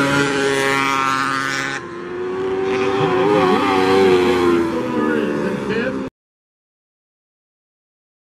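Mini sprint car engines running hard on a dirt oval, their pitch rising and falling as the cars go round. The sound changes abruptly about two seconds in and cuts off suddenly about six seconds in.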